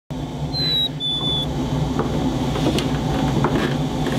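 Footsteps on wooden stairs, a few soft knocks over a low steady hum. Near the start there are two clear whistled notes, each about half a second, the second a little lower than the first.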